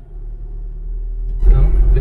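Car's engine and road rumble heard inside the cabin, growing steadily louder with a jump about one and a half seconds in as the car pulls uphill.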